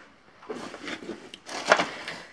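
Footsteps and scuffing over a cluttered floor: a handful of irregular scuffs and knocks, the loudest just before the end.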